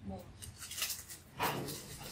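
Faint rustling of a cloth waist wrap being pressed and adjusted by hand, with a brief spoken word about one and a half seconds in.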